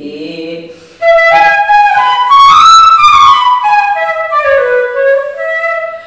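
Bamboo Carnatic flute playing a melodic phrase in raga Valachi. It enters about a second in, climbs note by note to a high peak in the middle, then steps back down to a held lower note that ends near the close.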